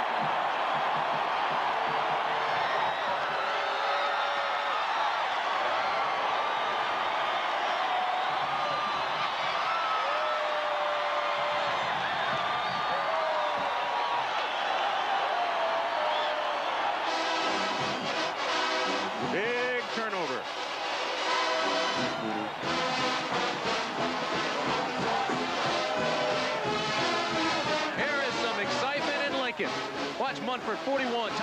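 Large stadium crowd cheering and roaring. A bit over halfway through, a band strikes up over the crowd, playing brisk rhythmic music with brass and drums.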